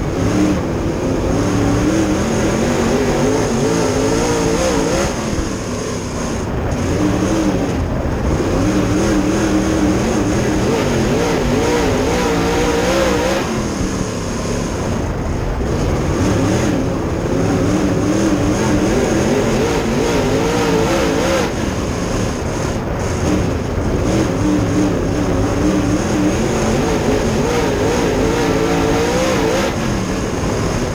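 Dirt Super Late Model V8 race engine, heard from inside the cockpit under racing load. Its pitch climbs for several seconds and then drops back, about every eight seconds, as the throttle comes on and off around the track, over steady wind and tyre noise.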